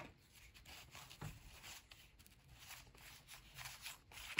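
Near silence, with faint, irregular scraping and ticking of NBA Hoops cardboard trading cards being slid one by one off a hand-held stack.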